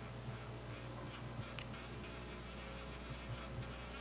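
Steady low electrical hum, with faint small ticks and scratches scattered over it.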